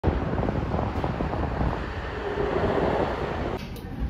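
Wind buffeting the microphone outdoors, a loud rumbling noise with a faint steady hum in the middle. It cuts off abruptly near the end to quieter indoor room sound.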